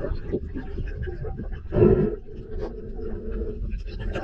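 Muffled sound of water recorded underwater from a shallow-water camera: a steady low rumble with scattered small clicks, and a short, louder rush about two seconds in.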